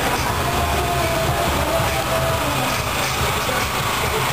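Steady low rumble of a carnival float's vehicle passing close by, with faint wavering tones over it.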